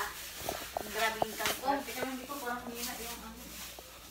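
Indistinct talking in a child's voice, close to the microphone.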